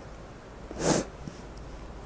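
A person sniffing once through the nose, a short sharp breath about a second in.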